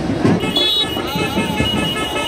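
Street procession din of drums beating and loud amplified music over a crowd, with a high held tone coming in about half a second in.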